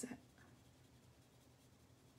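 Near silence, with the faint scratching of a coloured pencil shading on paper.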